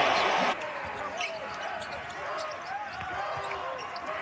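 Basketball arena crowd noise that cuts off suddenly about half a second in, followed by quieter arena ambience with a basketball bouncing on the hardwood court and faint voices.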